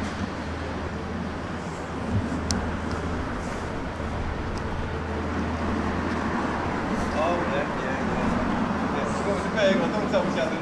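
Town street ambience: a steady low hum of traffic for the first several seconds, with indistinct voices of people nearby in the second half.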